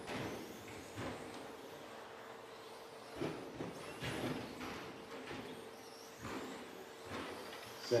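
2WD short course RC trucks with 13.5-turn brushless electric motors running laps, several short rising and falling motor whines as they accelerate and brake, with a steady faint hum underneath.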